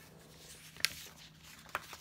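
Faint handling of paper sticker sheets on a table, with two light clicks about a second apart.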